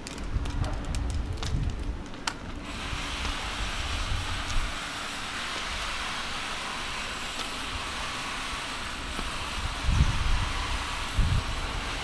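Outdoor street ambience: low rumble at first, then a steady hiss of wind and distant traffic from about three seconds in, with a couple of low thuds near the end.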